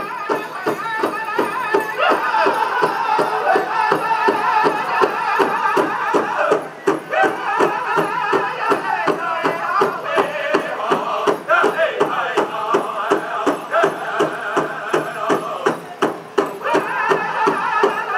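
Powwow drum group singing over a large drum struck in a steady beat, about three strokes a second; the singing breaks briefly about seven seconds in and again near sixteen seconds while the drum goes on.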